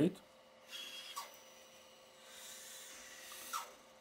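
Bandsaw with a 10 mm blade cutting through black walnut, heard faintly as a soft rasp of the blade in the wood, strongest in the second half and ending in a light knock.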